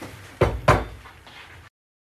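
Two dull knocks about a third of a second apart, a kitchen utensil striking the frying pan as water is added to it, followed by a short fading rustle. The sound then cuts off abruptly.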